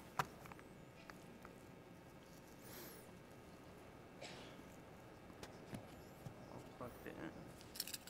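Near silence with faint room tone. There is a small click just after the start and a couple of faint soft scrapes from a hand lino-cutting gouge cutting into a rubber printing block.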